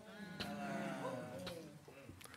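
A faint, drawn-out voice-like sound, held for about a second and a half with a slight waver and fading out near the end. It sounds like a murmured response from someone in the congregation during the preacher's pause.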